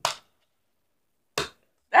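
Short sharp plastic clicks from a finger flicking the BeanBoozled game's plastic spinner on its cardboard card on a wooden table: one right at the start and one about a second and a half in.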